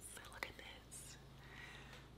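Near silence: room tone, with a faint click about half a second in and a brief soft hiss about a second in.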